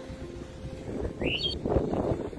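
Held music notes die away in the first half second, leaving outdoor wind noise rumbling on the microphone. A short rising chirp comes just past the middle.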